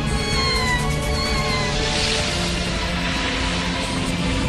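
An animated deer crying out twice, high and falling in pitch, over dramatic background music.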